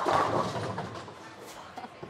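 Bowling ball crashing into the pins: a sudden clatter of pins that dies away over about a second, with a few faint knocks near the end.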